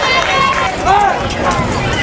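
Indistinct voices of onlookers shouting and calling out, loudest about a second in, over steady outdoor background noise.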